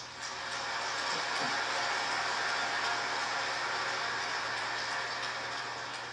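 A large audience applauding, a steady wash of clapping that eases off slightly near the end.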